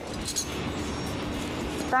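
A chef's knife cutting a lime on a cutting board, a few light clicks of the blade on the board near the start, over a steady low hum.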